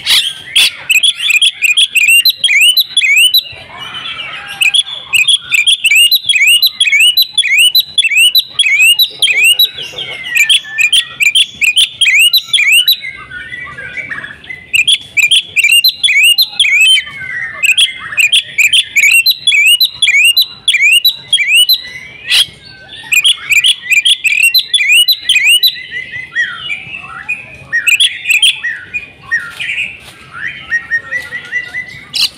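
Oriental magpie-robin singing in full, vigorous song: long runs of rapid, repeated high whistled notes, several a second, broken by a few short pauses.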